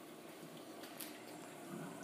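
Faint, steady sound of water running into a reef aquarium sump while the automatic water change runs: the return pump is off and the sump is filling from the drains as the old-saltwater pump pumps water out. A light tick sounds about a second in.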